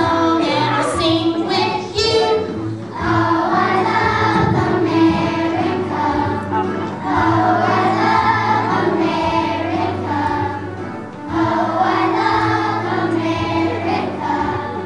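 A choir of kindergarten children singing a song together in phrases, with short breaks between lines.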